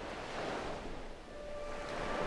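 Small sea waves breaking and washing up onto a sandy beach, swelling once about half a second in and again near the end.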